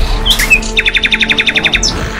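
A bird chirping a few short notes, then a fast trill of about a dozen notes lasting about a second, over background music.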